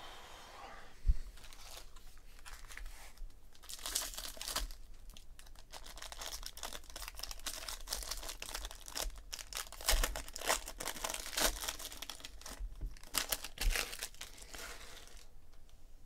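Foil wrapper of a trading-card pack being torn open and crinkled in the hands: irregular crackling that builds about four seconds in and runs on until shortly before the end. A single knock comes about a second in.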